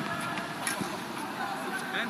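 Faint, indistinct voices over steady outdoor background noise, with no clear ball strikes.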